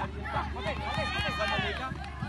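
Several high-pitched voices shouting excitedly over one another as a youth football attack ends in a goal.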